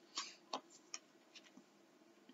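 A few faint clicks and taps of tarot cards being handled, as a card is drawn from the deck and laid down on the table.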